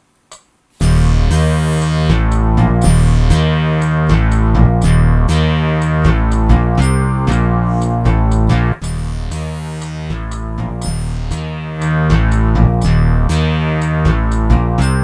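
Roland JD-800 digital synthesizer playing its Synthadelic Bass preset with portamento off: a loud, rhythmic, repeating low bass line that starts abruptly about a second in and briefly drops out just before 9 seconds.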